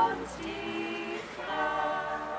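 A small choir singing a cappella in harmony, several voices holding long notes, with a new phrase entering shortly after the start and another about a second and a half in.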